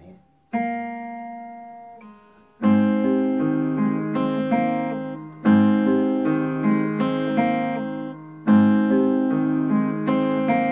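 Steel-string acoustic guitar fingerpicked over a G chord: two single notes, then a short arpeggiated phrase played three times over, each time opening with a strong bass note and letting the notes ring and decay.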